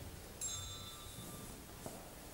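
A single high handbell rings once, briefly, about half a second in, its clear tone dying away within a second.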